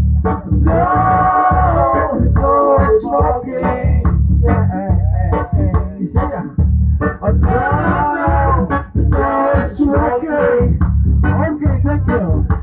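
Live song with a man singing long, bending lines over acoustic guitar and bass played through a loudspeaker, with a steady beat.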